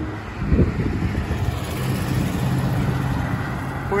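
Road traffic passing, with tyre and engine noise as cars and a pickup truck towing a trailer go by, and wind on the microphone. A brief low thump about half a second in.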